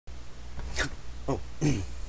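A man's short grunting vocal noises: three quick sounds, each falling in pitch, the first breathy and the last an "oh", over a steady low hum.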